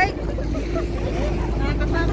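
Passenger ferry's engine running at the pier, a steady low hum, with wind buffeting the microphone and faint voices around.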